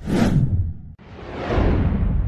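Two whoosh sound effects from an animated title intro. The first sweeps down in pitch and fades within about a second. The second swells up from about a second in and then falls away.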